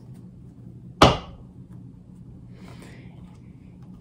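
A single sharp knock about a second in, dying away quickly, then a faint short rustle near three seconds, over a faint low hum.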